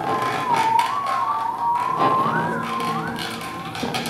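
Theremin playing a high, wavering line that slides up and down, swooping higher in wider arcs in the second half. Beneath it, sparse free-improvised accompaniment with low sustained notes and light taps.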